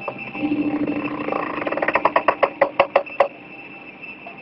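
A quick run of about a dozen sharp knocks, roughly seven a second, in the second half, over a steady high tone.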